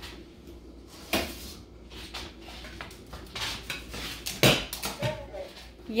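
Kitchen clatter of pots and dishes being handled: a series of separate clanks and knocks, the loudest about four and a half seconds in, as dog food is got ready.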